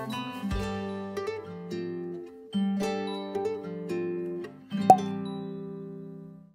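Background music: a light instrumental of plucked-string notes, with a last chord ringing out and fading near the end.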